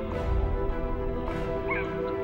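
Pipe organ music with long held chords. A brief high squeak sounds near the end.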